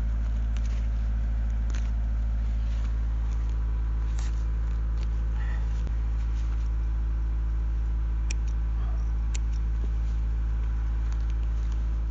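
The engine of the portable air compressor that feeds the air spade, running at a constant speed as a low, steady drone. A few sharp clicks stand out over it, fitting hand pruners snipping through small surface roots.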